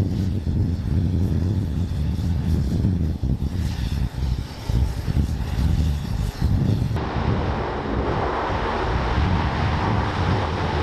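Low engine rumble as a Humvee drives down a landing craft's deck. About seven seconds in it gives way abruptly to a steady rushing noise from a landing craft, air cushion (LCAC) hovercraft, its gas turbines and lift fans running, with wind on the microphone.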